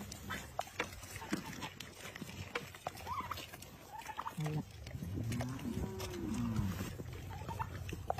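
Goats chewing grapes, a steady run of short wet crunching clicks. About halfway through, a voice says "Nice" in a long drawn-out tone.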